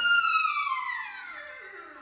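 Solo trumpet on a very high note that slides slowly down in pitch and fades away, a long jazz fall-off closing the tune.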